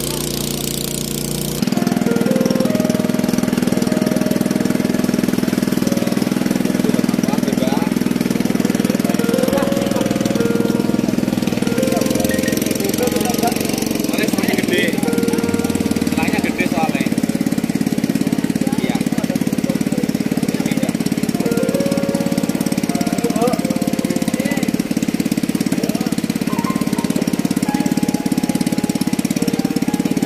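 Engine running steadily, likely the water tanker's pump engine driving water through the delivery hose, getting louder about two seconds in. People's voices can be heard over it.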